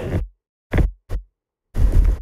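A man speaking French in a studio, trailing off a phrase, then a pause of dead silence broken by two short soft sounds before his voice resumes near the end.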